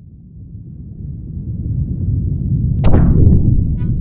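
Logo-intro sound effect: a deep rumble swelling up from silence, then a sharp crack about three seconds in, with a quick falling sweep after it.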